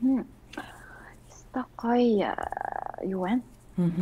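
A woman talking in Mongolian in short phrases with pauses, with one drawn-out creaky vocal sound a little past the middle.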